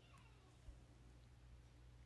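Near silence: room tone with a low hum, a faint falling tone at the very start and one soft tick under a second in.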